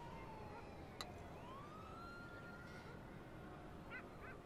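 Faint wailing tone, like a distant siren, falling slowly in pitch, then gliding up again and holding steady, with one sharp click about a second in.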